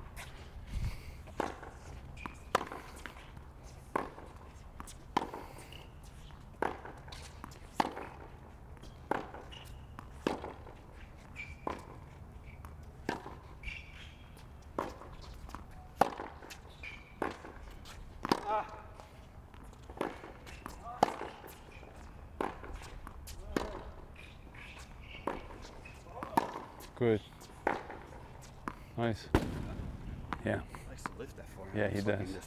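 Tennis rally on a hard court: rackets striking the ball and the ball bouncing, a sharp pop roughly every second or so, keeping a steady rhythm throughout.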